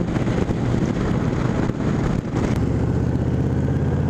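Honda VTX 1300R's V-twin engine running under way, mixed with wind noise on the bike-mounted microphone. About two and a half seconds in, the wind noise drops back and the engine's low, steady note stands out.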